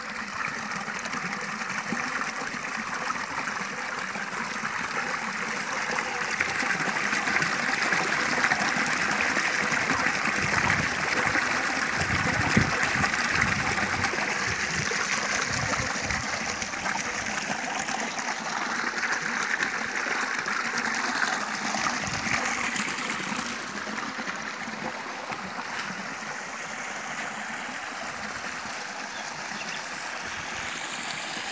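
Spring water pouring from spouts in a concrete fountain and splashing into the stone basin below. It is a steady rush of splashing that grows louder toward the middle and eases a little near the end.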